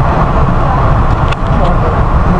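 Steady heavy rumble inside a Metro-North commuter train car pulling out of the station, with a couple of sharp clicks a little over a second in.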